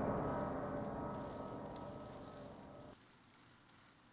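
The tail of a gong stroke ringing on and steadily dying away, cut off suddenly about three seconds in, leaving near silence.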